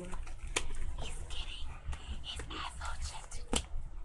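Whispered voices close to the microphone, with two sharp clicks, one about half a second in and one near the end, over a low steady hum.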